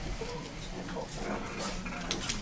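Faint classroom background: people shifting and moving about, with low indistinct voices, and no clear speech.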